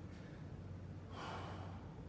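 A man breathing hard, winded from exertion, with one loud gasping breath about a second in.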